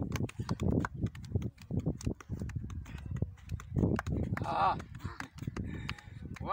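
Soccer ball being juggled on foot and knee: a quick, uneven run of taps as the ball is kept up off the grass.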